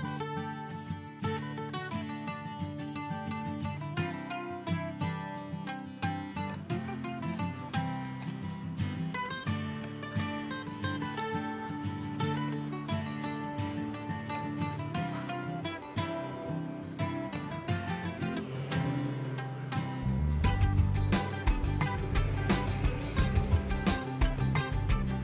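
Background music led by plucked acoustic guitar, with a deeper bass part coming in near the end.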